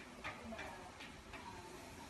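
A few light, irregular clicks or taps, quiet, with a faint voice underneath.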